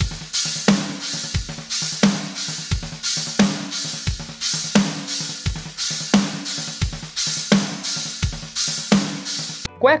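Acoustic drum kit playing a doubles exercise in sextuplets: right-left-left stickings, with single strokes moved among bass drum, china cymbal and snare. It forms a pattern that repeats about every 0.7 s with a loud cymbal accent each time. It stops abruptly just before the end.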